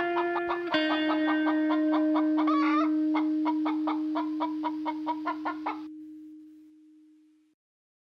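A chicken clucking rapidly over a held guitar note that closes the song. The clucking stops abruptly about six seconds in, and the note fades out soon after.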